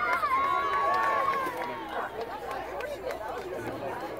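Sideline spectators at a rugby match shouting and calling out, several voices overlapping, with one long held yell in the first second and a half. The voices grow quieter toward the end.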